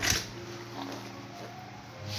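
Close-up rubbing in the ear canal as the ear-cleaning tool or endoscope moves against skin and hairs. A brief scrape comes right at the start and is the loudest sound, then fainter rustling follows over a low steady tone.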